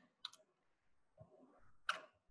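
Faint computer-keyboard keystrokes: a quick pair of clicks about a quarter second in and another near the end, as a word is typed.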